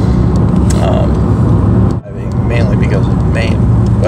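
Steady low road and engine rumble inside the cabin of a moving car, cut off abruptly about halfway through and returning over the next second.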